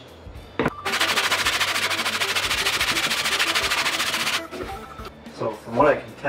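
Cast-iron sole of a vintage Stanley hand plane being rubbed across 120-grit sandpaper to flatten it: a loud, gritty rasping scrape that starts about a second in and lasts about three and a half seconds, after a single click.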